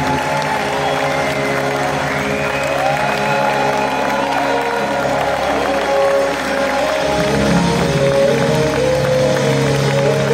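A live rock band plays on with electric guitars and drums while a large audience applauds and cheers.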